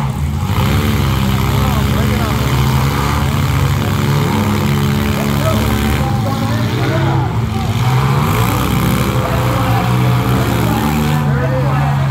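Engines of several compact demolition-derby cars running and revving together, loud and steady, with the pitch rising and falling as they are pushed.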